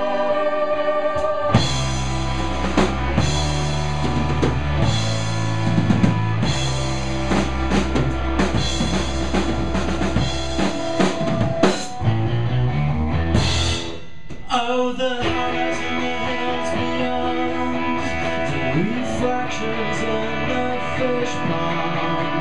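Live rock band playing an instrumental stretch on drum kit and electric guitars, the drums driving with regular hits over a heavy bass line. About fourteen seconds in the drums and deep bass drop away, leaving a lighter, strummed guitar texture.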